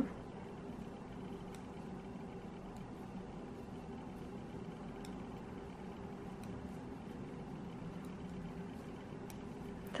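A low, steady background hum with a few faint ticks.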